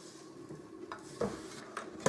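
A silicone spatula stirring a stiff coconut macaroon mixture of whipped egg white, powdered sugar and desiccated coconut in a stainless steel mixing bowl: soft scraping, with a few light knocks of the spatula against the bowl in the second half.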